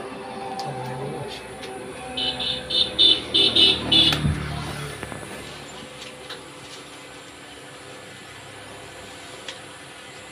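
A vehicle horn sounding in a quick run of about eight short blasts over roughly two seconds, starting about two seconds in.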